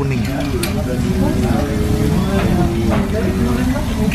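Restaurant room sound at a busy bar: other people talking in the background over a steady low rumble, with a light click about half a second in.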